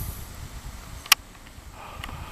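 A single sharp click about a second in, over a low, steady rumble.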